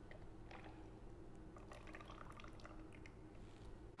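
Faint trickling of white-peach juice poured from a stainless steel bowl into a plastic measuring jug, with a few soft clicks.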